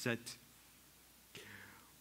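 A man's voice says one word, then a pause of room tone with a faint breath near the end.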